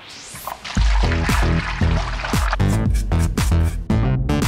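Background music: a rising sweep, then an electronic track with a heavy bass beat comes in just under a second in.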